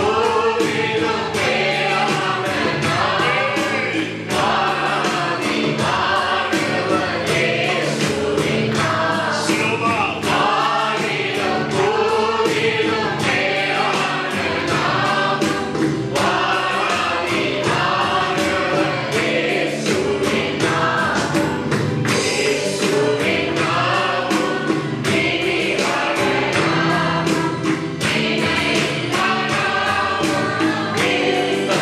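A group of men singing a Christian worship song together into microphones, with musical backing and a steady beat.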